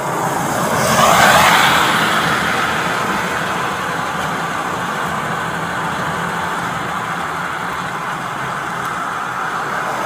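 A car passing on wet pavement: its tyre hiss swells and fades about a second in. Then comes a steady traffic hiss over a low engine hum, and another passing car begins to swell near the end.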